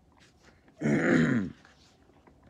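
A man clears his throat once, a short rasping sound of about half a second, starting about a second in.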